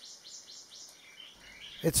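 Small birds chirping faintly in the background: a quick string of short, high notes, many of them falling in pitch.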